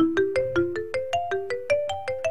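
A quick run of struck, bell-like musical notes, about five or six a second, stepping up in pitch overall, over a low steady hum.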